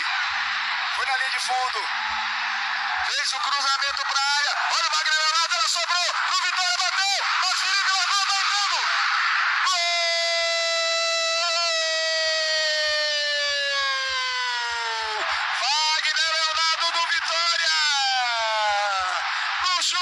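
Football radio commentator calling the play in fast, excited bursts over a steady stadium crowd noise, the sound thin and band-limited as on a broadcast. About halfway through, a long held cry of about five seconds slowly falls in pitch.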